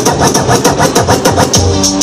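A hip-hop beat played from vinyl on two turntables and a mixer through the PA, the DJ working the record by hand, with rapid, evenly spaced drum hits.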